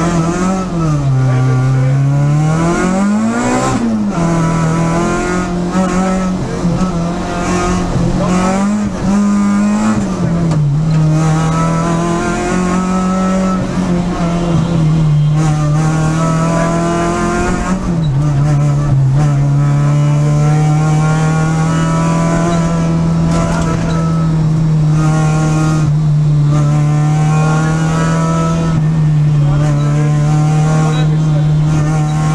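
Peugeot 306 Group A rally car's engine heard from inside the cabin, pulling hard away from the start line. The revs climb and fall sharply several times in the first ten seconds, run fairly level after that, drop about eighteen seconds in, then hold steady.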